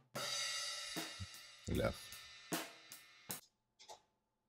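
Recorded drum-kit track playing back. A cymbal crash rings out and slowly fades, with several more drum and cymbal hits about a second apart. Playback stops just before the end.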